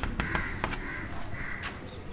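A few short chalk taps on a chalkboard as writing finishes, with faint bird calls, like crows cawing, in the background.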